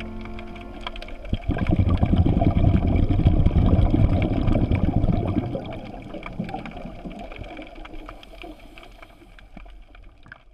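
Water gurgling and churning, heard underwater, with many small clicks; it swells about a second and a half in and fades away over the second half.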